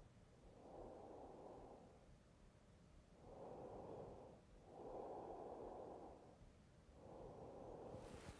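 A person's faint, slow breathing, four soft breaths of about a second each.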